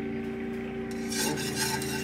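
Wire whisk stirring thick milk gravy in a pan, a run of rubbing, scraping strokes starting about a second in, over a steady low hum.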